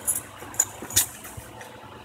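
A few short, sharp clicks of keys or a trackpad on a laptop being operated by hand, about three of them in the first second, over a faint room hum.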